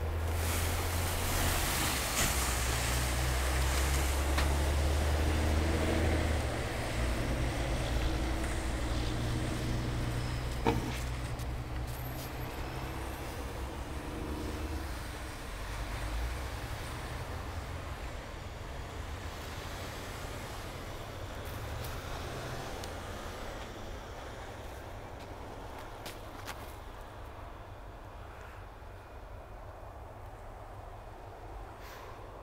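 Low steady drone of idling truck engines, loudest in the first few seconds and then fading gradually, with one sharp click near the middle.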